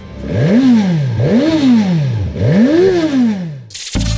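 Motorcycle engine revved three times, each throttle blip rising and falling in pitch and each peak higher than the last. A sudden loud burst of noise comes just before the end.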